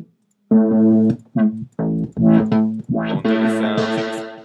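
Arturia Mini V software Minimoog emulation playing a synth bass line: after a brief silence, a run of short, sharply starting low notes begins about half a second in. About three seconds in the tone turns brighter, with a hissy edge on top.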